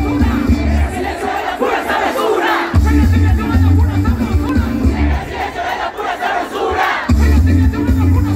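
Loud intro music with a heavy bass beat, layered with a crowd shouting. The bass drops out briefly between about two and three seconds in, and again shortly before the end.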